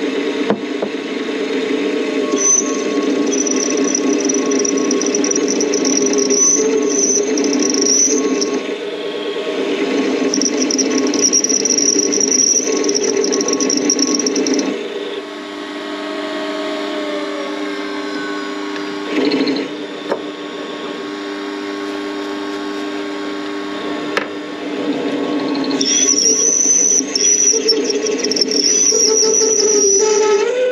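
Warco WM180 mini lathe running while a tool plunges a V-groove into a spinning metal pulley: a steady drive whine with a high-pitched cutting squeal on top. The squeal comes and goes, drops out with a quieter stretch through the middle, and returns near the end.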